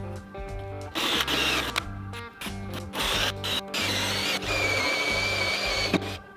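Cordless drill running in several bursts against a wooden concrete form board, the last burst a longer steady whine near the end, over background guitar music.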